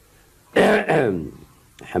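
A man clearing his throat once, a short burst about half a second in.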